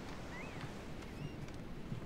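Steady low rumble of wind and ocean surf at the seashore, with a bird giving a few short, high chirps about half a second in and again just after a second.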